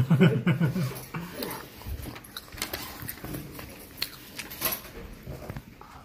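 Small clicks and rustles of fingers handling a tape roll while winding a sticky strip of bubblegum onto it. A brief pitched vocal sound comes in the first second.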